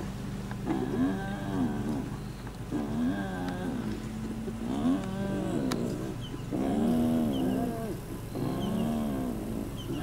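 Spotted hyena giving a series of drawn-out, lowing moans, five in a row, each about a second long and rising then falling in pitch.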